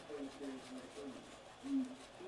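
Faint rubbing of a paper towel wiping glass cleaner over a radio's plastic display window, with a faint murmur of voice in the background.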